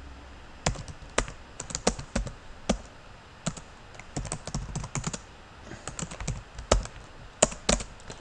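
Typing on a computer keyboard: irregular keystrokes in uneven runs with short pauses, starting just under a second in.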